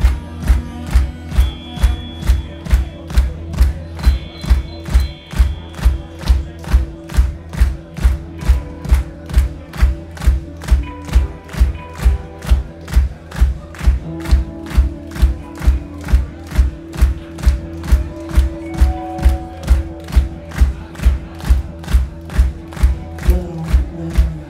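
Live garage-rock band playing at full volume: a driving kick-drum beat of about two and a half strokes a second under held electric guitar and bass chords.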